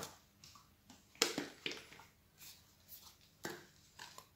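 Plastic bottle and paint tub being handled on a plastic-covered table: a few light knocks and taps, the sharpest about a second in.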